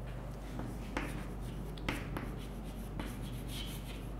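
Chalk writing on a chalkboard: faint scratching strokes with a few short sharp taps as the letters are formed, over a steady low hum.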